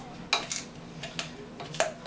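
A muddler crushing fresh cranberries in a metal cocktail shaker tin: a handful of sharp, irregular knocks and clicks of the muddler against the tin, the loudest about a third of a second in.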